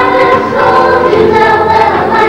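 A group of children's voices singing a song together in unison, with notes held and changing about every half second.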